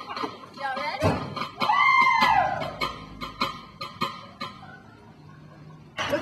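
People's voices over a quick, steady ticking beat of about four ticks a second; about two seconds in one voice gives a long call that rises and then falls. The ticking stops and it goes quieter near the end.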